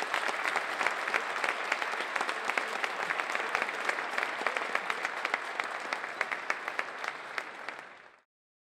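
A large seated audience applauding steadily, many hand claps blending together, easing off slightly near the end.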